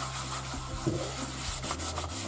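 Paper towel wiping cooking oil around the inside of a cast-iron Dutch oven, a papery rubbing in irregular strokes, oiling the pot before the sauce goes in.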